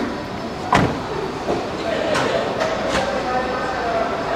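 Indistinct background voices of people talking in a busy indoor space, with one sharp knock about a second in and a few lighter clicks about two to three seconds in.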